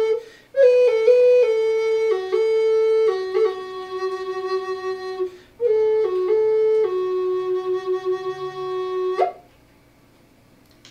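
Wooden Native American flute playing a slow melody of held notes, with two short breaks for breath. The piece ends with a quick upward flick about nine seconds in, then stops.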